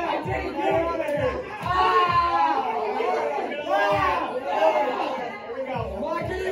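A group of teenagers chattering and calling out over background music with a steady beat.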